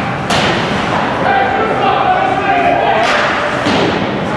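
Ice hockey rink sounds in an echoing arena: a sharp thump about a third of a second in, with weaker knocks near the end, over continuous spectators' voices and shouts.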